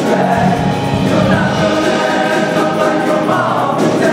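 Show choir singing in harmony with instrumental accompaniment, holding a sustained chord from about a second in until just before the end.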